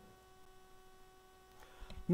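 Near silence with a faint steady electrical hum in the recording, and a couple of faint clicks near the end.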